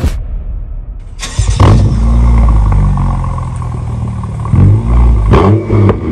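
BMW 535i's turbocharged inline-six starting through an aftermarket M-style quad-tip exhaust about a second in, then settling into a deep, loud idle. Near the end the engine is blipped in short rev sweeps that rise and fall.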